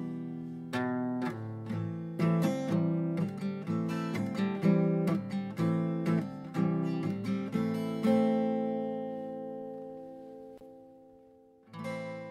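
Acoustic guitar playing the closing bars of a song: picked and strummed notes for the first eight seconds, then a final chord that rings and slowly fades, and one more chord struck just at the end.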